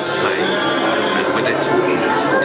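Attraction soundtrack of voices over music, a dense, steady mix with no single sound standing out.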